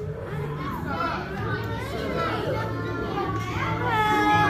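Many children's voices chattering and calling out over one another in a busy room.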